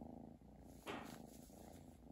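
A young cat purring faintly and steadily, with a short noise about a second in.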